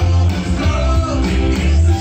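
Live band music through a concert PA, recorded from within the crowd: loud, with a heavy bass beat under a melodic line.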